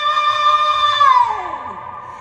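A man's singing voice holds the song's final high note steadily, then slides down in pitch and fades away in the second half. The voice rings with echo off the concrete-and-metal storage garage.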